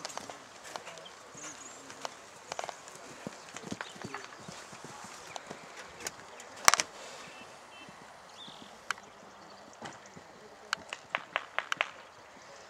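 Hoofbeats of a young horse cantering on a sand arena: scattered soft strikes, then a quick run of sharper clicks in the last second or so. A single sharp knock about two-thirds of the way through is the loudest sound.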